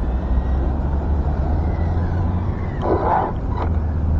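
Faint high whine of a Tamiya DT-02 RC buggy's stock brushed electric motor as it is driven back at part throttle, rising and then falling and fading out, over a steady low rumble.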